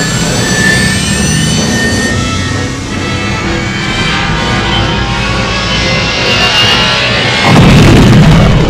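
Film sound effect of the Millennium Falcon's engines firing up with a rising whine, then running as a steady roar under orchestral film score music. A louder, deeper rumble swells near the end.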